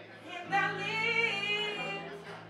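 A woman singing one long held note live, coming in about half a second in, over held electric guitar and bass guitar notes.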